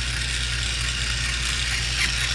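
Battery-powered TOMY TrackMaster toy engine running along plastic track, a steady motor-and-wheel noise with a low hum under it.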